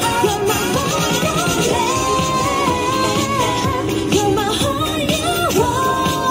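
Korean pop dance track with a steady beat and a sung vocal line holding long notes, played through portable street PA speakers.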